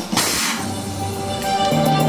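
A short burst of noise right at the start as confetti cannons fire, then celebratory fanfare music starting with steady held notes.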